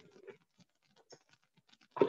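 Near silence with a few faint, soft clicks, such as a utensil makes scooping and dropping cream cheese filling onto a cake layer.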